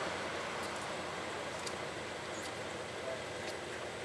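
Faint, steady background hiss with a few soft ticks as a rubber coolant hose and its plastic-coated metal tube are twisted by hand.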